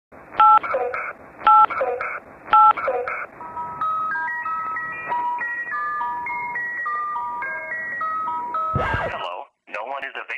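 Telephone keypad tones over a phone line: three beeps about a second apart, then a quick run of dialing tones stepping up and down in pitch. A loud thump near the end, then a voicemail greeting begins.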